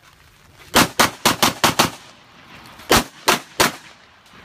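Glock 34 9mm pistol fired rapidly in a competition string: six shots in about a second, a short pause, then three more shots about a third of a second apart.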